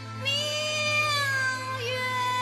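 One long, animal-like call that slowly falls in pitch over about a second and a half, with a short glide near the end, over background music.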